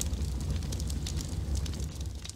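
Fire sound effect: crackling over a steady low rumble.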